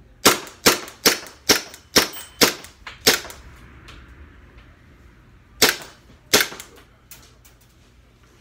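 Carbon8 M45 CQP CO2 gas-blowback airsoft pistol (1911-type) firing seven shots in quick succession, about two and a half a second. After a pause of two and a half seconds it fires two more, followed by a few faint clicks.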